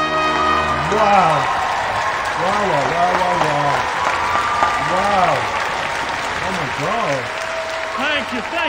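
Concert audience applauding at the end of the song. Over the applause a man's voice makes several drawn-out, rising-and-falling exclamations.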